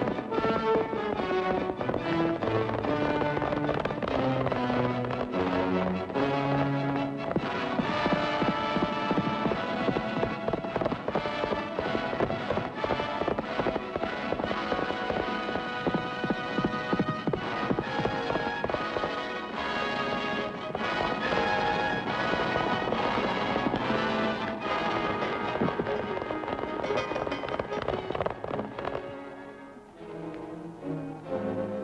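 Orchestral film score over the hoofbeats of a galloping horse. A stepwise falling line sounds in the low notes over the first several seconds, and the music fades just before the end.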